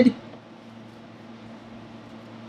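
Quiet room tone: a faint, steady hiss with a low hum.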